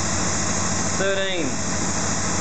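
Honda VFR800's V4 engine idling steadily at about 1,600 rpm while still warming up, with vacuum reconnected to its fuel pressure regulator.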